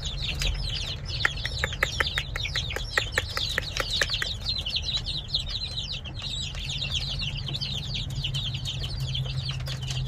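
A brood of baby chicks peeping continuously, many high, short peeps overlapping. A quick run of sharp taps comes in the first half, over a steady low hum.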